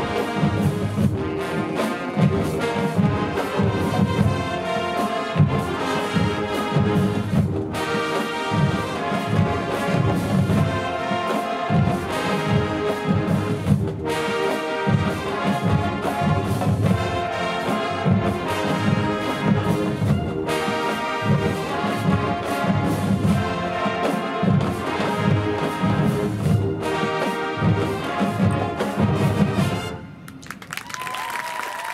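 A massed marching band of over five hundred players, with brass and drums, playing a loud, full piece with a steady drum beat under the horns. The music cuts off at the very end.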